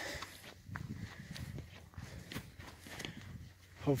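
Footsteps of a hiker walking downhill over dry grassy ground, soft crunching strikes at an unhurried walking pace.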